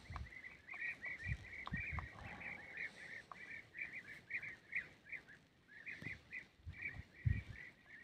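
A bird calling in a fast run of short chirps, about four a second, with a brief pause about two thirds of the way through. A few soft low thumps sound under it.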